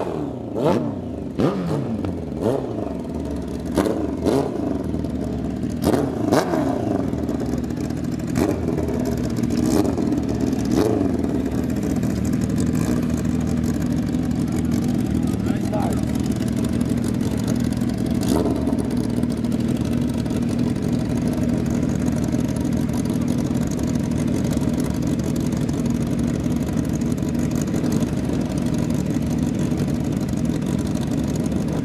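Two drag-race motorcycle engines: a series of sharp throttle blips over the first ten seconds or so as the bikes come up after the burnout, then both engines idling steadily side by side at the start line.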